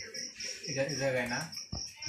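A steady high-pitched chirping, about four short pulses a second, under a low voice, with two short clicks near the end.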